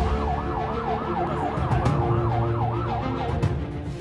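Police siren in a fast yelp, sweeping up and down about three to four times a second and stopping near the end, with steady background music underneath.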